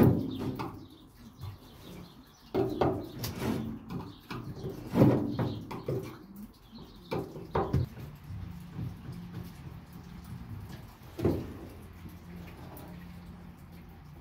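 A series of irregular knocks and clunks, loudest at the very start and about five seconds in, with a last one about eleven seconds in. A low steady hum runs underneath in the last few seconds.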